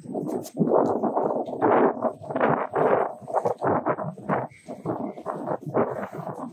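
Riding noise from a scooter moving along a concrete promenade: rumbling and buffeting that comes in quick, irregular bursts, typical of wind hitting the phone's microphone together with wheel noise.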